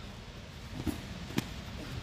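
Bodies shifting and rolling on a foam grappling mat, a faint low rustle with two light clicks in the second half.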